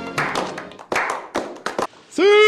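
A small group of people clapping slowly: about five separate hand claps over two seconds, unevenly spaced, as music fades out at the start.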